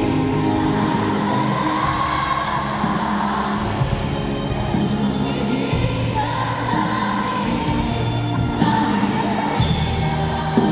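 Live band and female lead vocalists performing a power ballad through an arena PA, recorded from the audience, with the singing carrying the melody over drums and keyboards.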